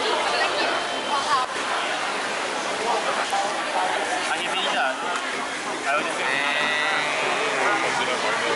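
Chatter and talk of a busy hawker centre crowd, with a brief high-pitched sound about six seconds in.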